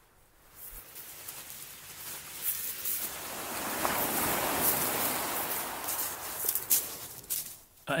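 Surf on a shingle beach: a wave breaking and washing up the pebbles, swelling over a few seconds, loudest in the middle, then draining away near the end, with a few sharp clicks.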